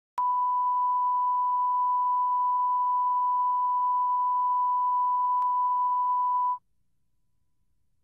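A steady electronic test tone at a single pitch, held for about six seconds: it starts with a click, has a brief click partway through, and cuts off suddenly near the end, leaving near silence.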